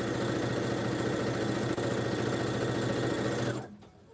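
Electric sewing machine stitching through quilt block fabric at a steady speed, stopping abruptly about three and a half seconds in.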